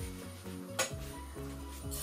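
Soft background music, with a metal spoon clinking against a pot about a second in as vermicelli is stirred in hot ghee to brown it, over faint sizzling.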